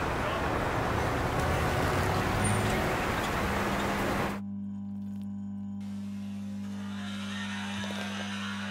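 City street traffic noise, a steady wash of passing cars. About halfway through it cuts off abruptly to a steady low hum.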